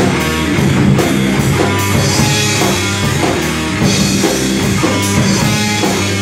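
Live rock band playing loud and steady: electric guitars over a drum kit keeping a regular beat.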